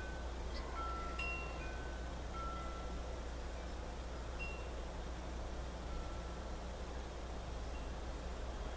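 Chimes ringing now and then: a scatter of short, high ringing notes at several pitches, most of them in the first three seconds and a couple more later, over a steady low hum.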